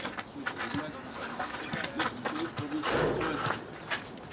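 Distant shouting and calling voices of players on an outdoor football pitch, with a few short sharp knocks and a louder rough burst about three seconds in.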